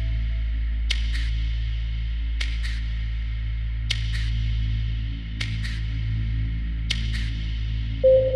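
Generative ambient electronic music: a steady low drone with a pair of short, bright ticks repeating about every one and a half seconds. A higher held tone dies away within the first second.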